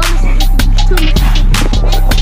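Hip hop backing music with a heavy bass and a steady beat of sharp hi-hat ticks.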